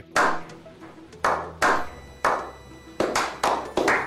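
A small group of people clapping slowly and unevenly, about eight separate claps, each with a short ringing tail.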